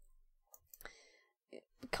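A few faint, short clicks in a quiet room, with a brief faint murmur or breath in between. Speech starts right at the end.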